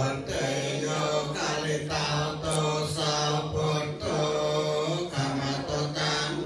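Khmer Buddhist chanting, voices reciting together on a steady low pitch with short pauses between phrases.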